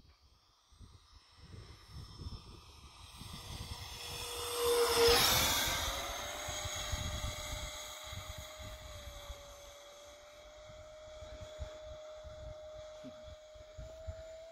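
A 50 mm electric ducted fan (FMS impeller on a 4S battery) in a model Iskra jet, whining and rushing as it makes a low pass. It is loudest about five seconds in, and its whine rises a little in pitch just after the pass and then holds steady as the jet flies away.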